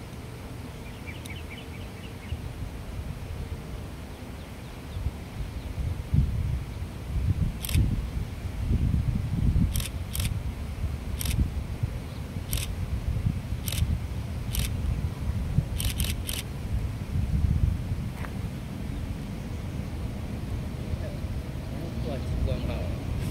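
Distant train hauled by an E500-series electric locomotive passing, heard as a low rumble that builds about five seconds in and carries on. A series of sharp clicks comes between about eight and sixteen seconds in.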